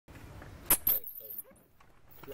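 Two sharp knocks less than a second in, then a few faint whimpering calls from a baby macaque.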